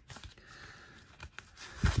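Faint rustling and light scraping as plastic packing inserts are pulled out of the pockets of a new leather bifold wallet.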